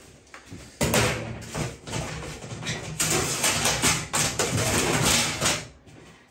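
Rummaging through gear: items being shifted with a dense run of clattering, rattling and knocks, starting about a second in and growing louder about halfway through, then stopping just before the end. The likely source is metal rack hardware being pulled out, such as the perforated metal panel he comes back with.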